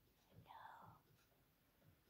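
Near silence, with one faint, brief whisper about half a second in.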